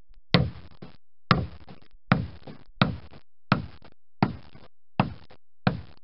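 Caulker's wooden mallet striking a caulking iron, driving fibre into the seam between the planks of a wooden boat hull: eight steady, evenly spaced blows, a little over one a second.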